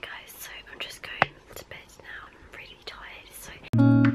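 A woman whispering to the camera, then music starts abruptly and louder just before the end.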